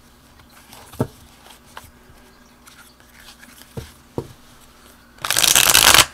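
A thick tarot card deck riffle shuffled by hand. A few light clicks come as the cards are handled, then near the end a loud riffle of almost a second as the two halves fall together: a really nice riffle shuffle.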